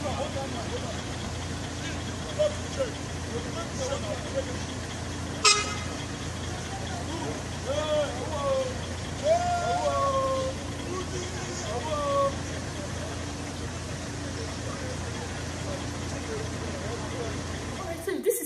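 Phone-recorded street noise: a steady low rumble with distant voices talking and calling out, busiest around the middle, and one sharp click about five and a half seconds in.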